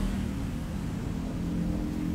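A steady low mechanical hum, like a motor running in the background.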